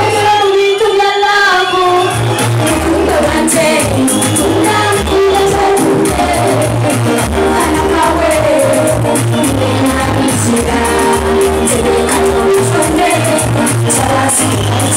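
Loud live stage music: a woman singing into a microphone over music with a steady, pulsing bass beat, heard through the concert sound system.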